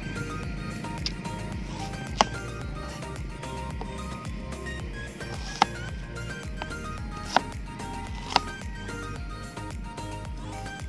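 A kitchen knife chopping an onion on a cutting board: four sharp, separate knocks of the blade striking the board, over steady background music.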